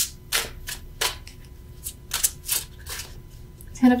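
Tarot cards being handled and shuffled: a dozen or so irregular sharp card clicks and snaps.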